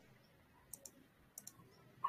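Two quick double clicks of a computer mouse over near-silent room tone, the first a little under a second in and the second about half a second later.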